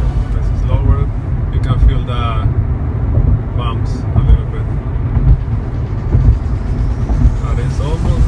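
Road noise inside the cabin of a 2014 Toyota Corolla S cruising on a concrete highway: a steady low rumble from tyres and engine.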